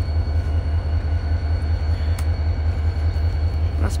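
Steady low rumble of a diesel freight train approaching in the distance, with a couple of faint clicks.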